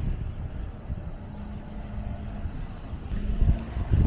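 Wind buffeting the microphone: an uneven low rumble, with a faint steady hum in the background.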